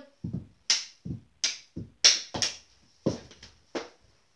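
Plastic mini hockey sticks clacking against each other and the ball at a knee hockey faceoff and scramble: about ten sharp knocks in quick, uneven succession, some with a dull thud on the carpet.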